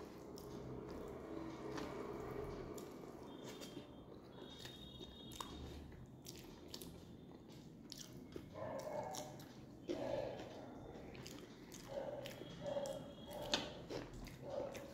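Close-miked chewing and biting of a mouthful of rice and fish curry, with wet mouth clicks and squishes throughout. From a little past halfway, the chewing comes as a run of short, evenly repeated pulses as green chili is bitten along with the food.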